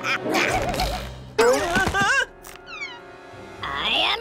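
Cartoon soundtrack: wordless character cries and grunts in the first half, then a quick falling whistle-like sound effect a little before three seconds in, over background music.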